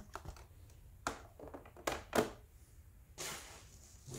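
Hard plastic CGC comic slabs being handled and set down on a stack: a few sharp clacks about a second and two seconds in, the last two loudest, then a brief rustle near the end.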